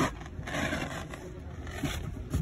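Vinyl coil car floor mat being pulled up and dragged over the carpet beneath it: a knock, then about a second of scraping.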